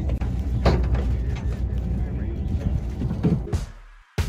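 Fishing boat's engine running underway with a steady low rumble, fading out near the end.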